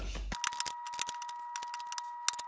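Tarot or oracle cards being laid out and turned over on a table: a rapid, uneven run of light clicks and taps, over a faint steady high whine.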